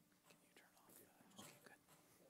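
Near silence, with faint whispering and a few soft clicks and rustles as a choir stands ready to sing.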